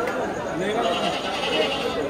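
A goat bleating: one wavering call of about a second, starting about a second in, over the chatter of men's voices.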